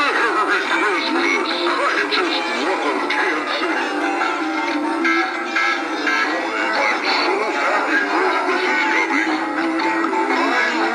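Several animated singing-and-dancing Santa figures playing their recorded Christmas songs at once, the sung voices and tunes overlapping into a steady jumble with no bass.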